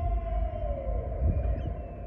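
A long held pitched note that sags downward in pitch about half a second in and dies away, over a low rumble of wind on the microphone.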